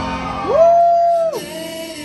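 A single long whoop from an audience member that swoops up, holds one high note for about a second and drops away. It is louder than the live acoustic band playing underneath.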